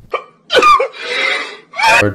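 A man's short vocal noise, then a long breathy exhale like a sigh, and another brief vocal sound with rising pitch near the end.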